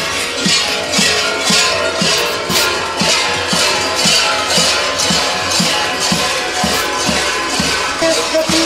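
Kukeri's large metal bells clanging together in a steady rhythm, about two clangs a second, as the dancers step and bounce, with a constant metallic jangling between the beats.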